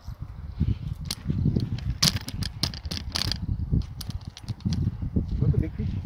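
Wind buffeting the microphone in an uneven low rumble, with a run of sharp clicks and rustles from about two to three and a half seconds in.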